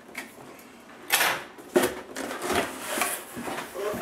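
Cardboard box being opened: a quiet start, then two sharp knocks a little over a second in and just under two seconds in, followed by irregular scraping and rustling as the lid and flaps are lifted.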